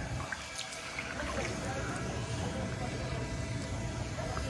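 Faint water sounds of a kayak paddle stroking through shallow floodwater, over a steady outdoor background noise.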